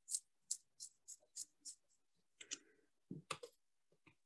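Toothbrush bristles being flicked to spatter white acrylic paint: a faint, crisp flick about three times a second. Near the end a scratchier rustle and a few louder knocks of handling.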